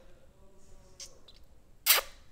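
A loud, short smacking kiss near the end, made with puckered lips toward the camera, after a faint click about a second in.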